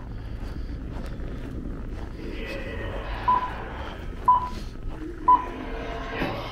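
Three short electronic beeps, evenly spaced about a second apart in the second half and the loudest sounds, over a steady background of street noise.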